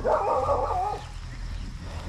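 A dog whining: a brief, high, wavering call in the first second, then it stops.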